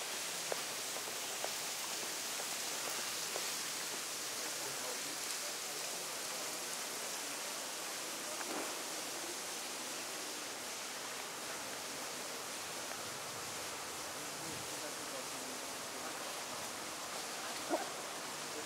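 Steady, even hiss of outdoor city street ambience, with a few faint clicks early on and a short knock near the end.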